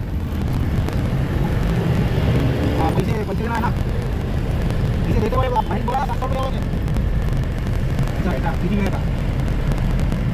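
Steady low engine and road rumble inside a Tempo Traveller passenger van moving through city traffic. Voices talk intermittently over it: about three seconds in, again around five to six seconds, and near nine seconds.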